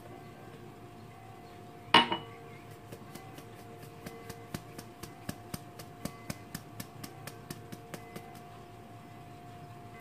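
Metal mesh sieve being tapped and shaken over a ceramic bowl to sift flour: one sharp clink about two seconds in, then a run of light, even ticks about three a second that stops shortly before the end.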